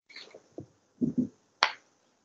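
Two short low sounds of a man's voice about a second in, then a single sharp click near the end.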